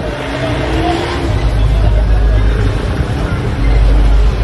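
A steady low rumble with people's voices talking in the background; the rumble is loudest near the end.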